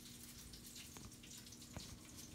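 Near silence: faint room tone with a steady low hum and a couple of soft clicks.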